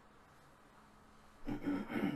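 Quiet room tone, then about a second and a half in a man's brief wordless voiced sound, low in pitch.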